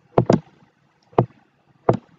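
Computer mouse clicks: a quick pair of clicks, then single clicks about a second in and near the end.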